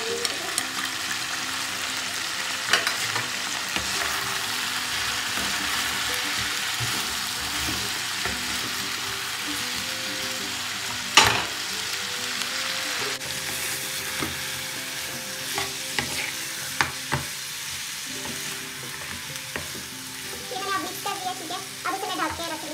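Mutton, onions and tomatoes sizzling in a hot karahi while a steel spoon stirs and scrapes through them, with a few sharp clinks of the spoon against the pan, the loudest about eleven seconds in.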